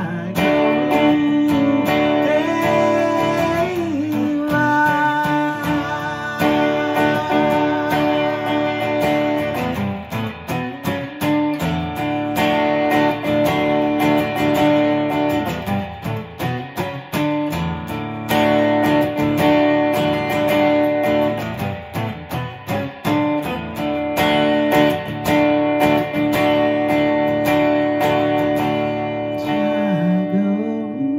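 Steel-string acoustic guitar strummed steadily, in an instrumental passage of chords ringing on.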